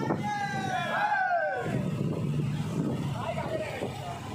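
Engines of a group of motorcycles running at low speed in procession, with a voice calling out in long, drawn-out tones over them for the first second and a half.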